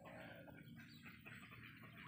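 Faint soft calls from a flock of white Muscovy ducks and their ducklings, barely above near silence.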